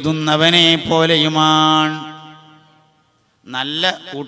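A man's voice chanting a melodic line with long held notes, then trailing away about two seconds in. The voice starts again near the end.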